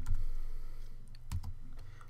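Typing on a computer keyboard: a quick run of keystrokes at the start and a few more about a second and a half in, over a faint steady low hum.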